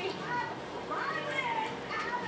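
Women's lively, high-pitched talking and laughter from a television programme, played through the TV's speakers.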